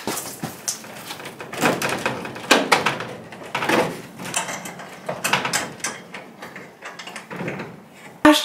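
A greenhouse roof vent being worked shut by hand, its plastic panel and frame rattling and scraping in irregular bursts.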